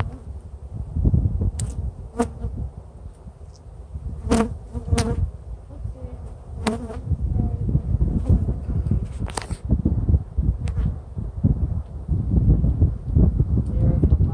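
Honeybees buzzing close around an open hive, the hum swelling and fading in loudness. A few short, sharp clicks are scattered through it.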